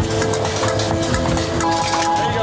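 Background music with long held notes.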